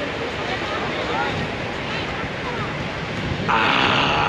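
Steady wash of surf with wind on the microphone and faint voices in the background; about three and a half seconds in, a man breaks in with a loud open-mouthed exclamation.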